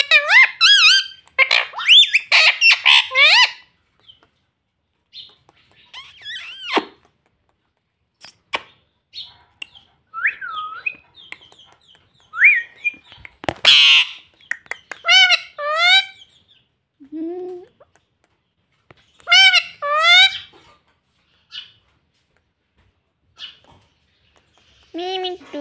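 Indian ringneck parakeet calling in short bursts of high, pitch-bending chirps and chatter. A thick run of calls opens the stretch, then scattered calls follow, with one loud harsh squawk about halfway through.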